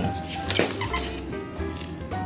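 Hot water pouring from a jug into a paper cup of instant ramen, over the noodles, with soft background music of held notes.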